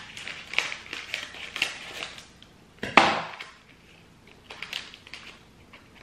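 Scissors snipping through a plastic candy sachet, with the wrapper crinkling in short crackly clicks and one sharper, louder snap about three seconds in.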